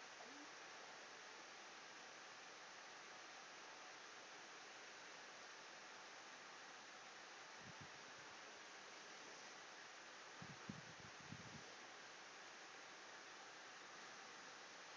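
Near silence: steady microphone hiss, with a few faint low thumps about halfway through and again a little later.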